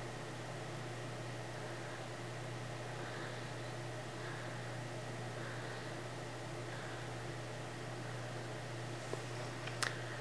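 Steady background hum and hiss of room tone, with no distinct event; a couple of faint clicks come near the end.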